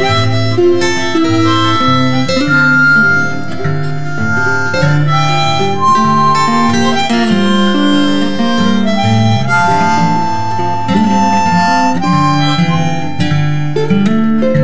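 Harmonica playing a melody of long held notes over guitar chords, an instrumental break with no singing.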